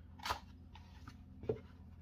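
A cardboard Blu-ray box set handled and turned over in the hands, with two brief rustles, a longer one early and a short one about a second and a half in, over a faint steady hum.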